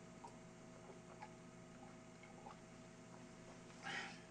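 A man drinking from a glass of water, close to a headset microphone: faint swallowing clicks over near silence and a low steady hum, with a brief louder hiss near the end.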